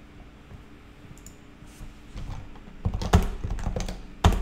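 Typing on a computer keyboard: a quick run of key clicks starts about halfway through and gets denser and louder near the end.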